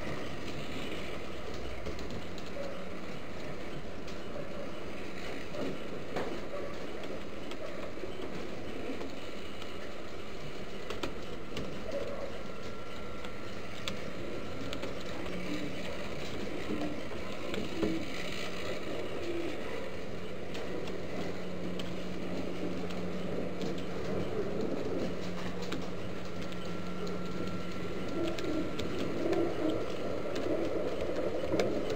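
Homing pigeons cooing in short, low calls on and off over a steady hiss, with a low steady hum through much of the second half.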